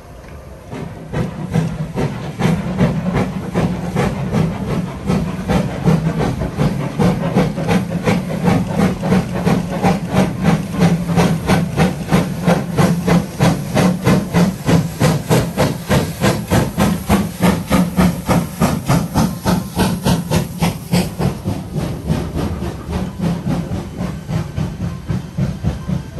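Steam locomotive working hard under load, its chuffing exhaust beating in a steady rhythm of about two to three beats a second, building up over the first couple of seconds, with a steady hiss of steam.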